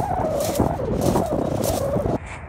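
Footsteps crunching on loose shingle, with a wavering, drawn-out whine running through them whose source is not clear.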